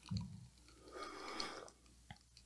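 Faint sounds of two people drinking a sparkling drink from a can and a glass. There is a short low gulp just after the start, then a soft breath lasting under a second, about a second in.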